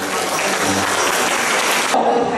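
Audience applauding, with a few held notes of music dying away under it in the first second.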